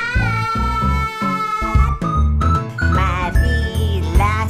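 Children's song: a voice holds one long sung note with vibrato over a bouncy backing track with bass. After a brief break the next sung line begins.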